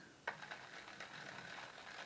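Fine spiky side of a stainless steel grater rolled over frozen sloes, a faint, steady rasping scrape that starts with a click just after the beginning; the grater pricks the skins of the fruit.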